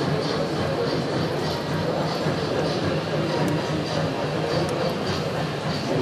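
Steady background chatter of many voices, with the running of an HO-scale model steam tram engine along the track.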